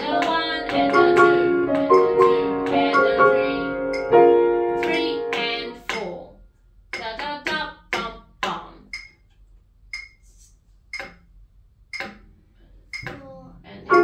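Grand piano played by a student: sustained chords for about six seconds, then the playing stops. A few short ticks about a second apart follow, and the piano starts again near the end.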